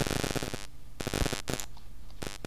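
Crackling microphone static over a steady electrical hum, broken by several sharp clicks: a cluster at the start and a few more about a second in.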